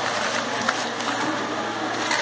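Steady rushing, machine-like noise with a single light click a little way in.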